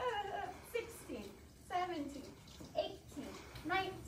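A woman's voice counting aloud, one drawn-out number roughly every second.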